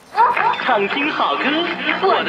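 Speech from an Asian-language AM station on the speaker of an early-1960s His Master's Voice Sprite transistor radio, coming in suddenly about a fifth of a second in as the dial is tuned onto it.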